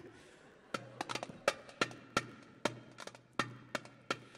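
Hand drum struck with the hands in a loose rhythm of about three strikes a second, starting about a second in, each stroke ringing briefly with a low boom.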